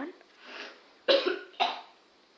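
A young woman coughing twice, short and sharp, a little after a second in, set off by breathing in curry powder from the rose she has just sniffed.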